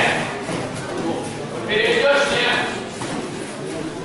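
Voices calling out in a large, echoing sports hall during a full-contact Sanda bout, with a few faint thuds of strikes landing.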